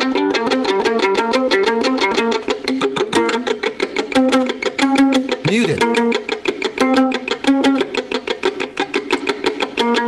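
Violin played pizzicato: a fast, even stream of plucked notes moving between a few pitches. About five and a half seconds in there is a brief sliding swoop in pitch.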